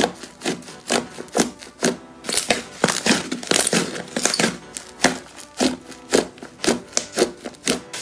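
Slime being squeezed and stretched by hand, giving a run of sharp clicking and popping sounds a few times a second, thickening into a dense crackle in the middle.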